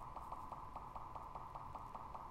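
A faint steady hum with a fast, even ticking running through it, like a small fan or motor.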